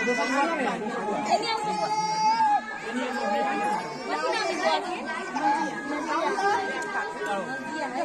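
Several people talking at once around a small crowd, with long held voice-like tones running through the chatter.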